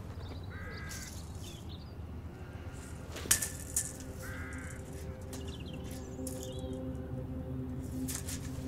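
A bird calling twice, a few seconds apart, over a constant low outdoor rumble, with a sharp knock about three seconds in and a softer one just after. Soft sustained music tones come in from about halfway.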